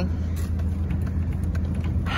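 Steady low engine and road rumble inside a moving farm vehicle.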